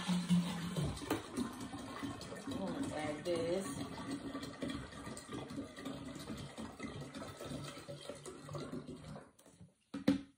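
Juice pouring out of an upended plastic bottle into a large glass drink dispenser, a steady flow that stops about nine seconds in as the bottle runs empty.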